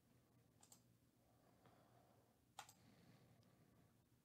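Near silence with a few faint computer mouse clicks, the sharpest about two and a half seconds in.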